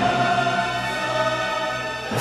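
Classical choral music with orchestra: choir and orchestra holding a sustained chord.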